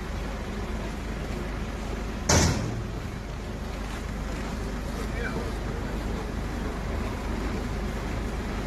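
Steady low rumble of the fire service aerial ladder truck's engine running. A single sharp, loud knock comes about two seconds in.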